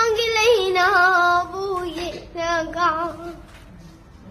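A young girl singing a slow melody in two phrases of long, wavering held notes, the second phrase trailing off a little before the end.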